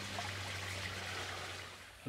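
Steady background hiss with a low hum underneath, fading out near the end.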